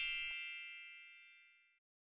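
A notification-bell chime sound effect ringing out, a bright ding with several ringing tones that fades away over about a second and a half.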